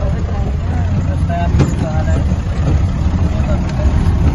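4x4 jeep driving along a rough, rocky dirt mountain track: a steady low rumble of engine and drive noise, with faint voices under it.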